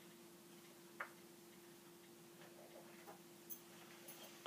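Near silence: room tone with a steady faint hum, broken by a few small clicks, the sharpest about a second in and softer ones near the end.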